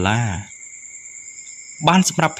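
A narrator's voice finishing one phrase and, after a pause of over a second, starting the next. A steady high-pitched whine of two tones runs under it and is left alone in the pause.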